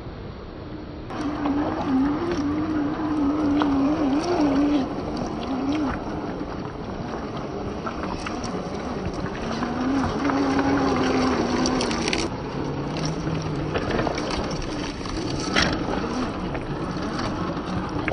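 Traxxas TRX-4 RC crawler's electric motor and gearbox whining as it drives through shallow river water, the pitch wavering up and down with the throttle, over splashing water and scattered clicks. The whine starts about a second in and sits lower in pitch past the middle.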